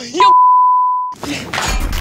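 A loud censor bleep: one steady pure tone lasting about a second that cuts in straight after a shouted word and blanks out the rest of it. It is followed by a noisy rush with a low thump near the end.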